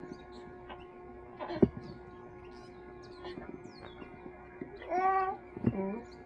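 A two-and-a-half-month-old baby cooing once about five seconds in, a short rising-and-falling vocal sound, over a steady electrical hum. A sharp knock comes a little over a second and a half in.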